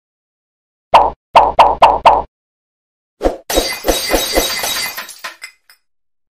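Edited sound effect: five quick hollow plops in about a second and a half, then a crashing, shattering hit whose pulses come faster and faster and die away about five seconds in.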